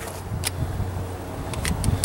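A few short metallic clicks and clinks as the sections of a 6-in-1 camp tool's metal handle are worked apart: one about half a second in and a quick run of them near the end, over a low steady background rumble.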